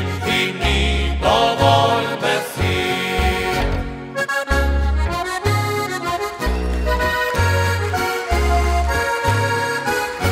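Diatonic button accordion playing an instrumental passage of a Slovenian folk tune, over a bass line that changes note about every half second to second, from the band's double bass (berda).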